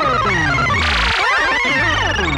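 Dense, chaotic electronic music with many tones sliding up and down in pitch and a short burst of noise about a second in; no singing.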